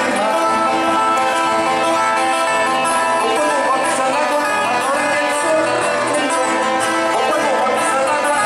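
Traditional Mexican folk dance music played on guitars and other plucked strings, continuous and steady in loudness.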